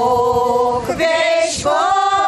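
A women's folk ensemble singing together in long held notes, with a short break and a new phrase starting about a second in.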